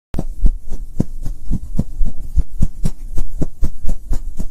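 Animated-logo intro sound: a steady run of deep bass thumps, about four a second.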